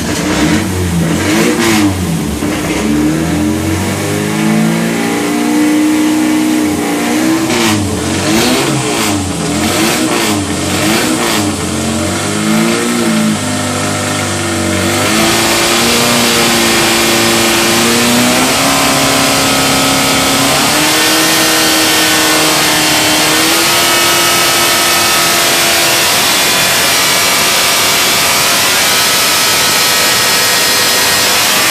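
MGB B-series four-cylinder engine with a crossflow head, running on an engine dynamometer. For the first fifteen seconds it is revved up and down repeatedly. Then it grows louder and holds steady, higher revs, the pitch stepping up a few times.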